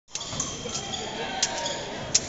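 An épée bout in progress: sharp taps and clacks from fencers' footwork on the strip and blades meeting, about four in the first second and a half, over voices in the hall.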